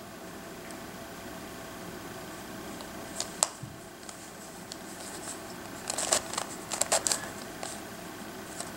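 Plastic pieces of a Crazy Radiolarian twisty puzzle clicking as its faces are turned by hand: a couple of isolated clicks about three seconds in, then a quicker run of clicks in the second half, over a steady low hiss.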